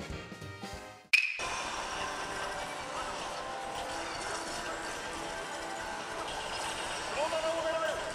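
Swing-style brass music stops about a second in. A sharp ringing hit follows, then a steady din of pachislot machines with electronic jingles and effects, with a short rising electronic tone near the end.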